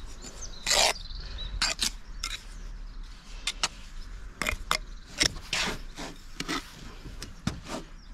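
Steel pointing trowel scraping and tapping against brick and wet mortar as joints are packed and trimmed: a string of short, irregular scrapes, the loudest about a second in.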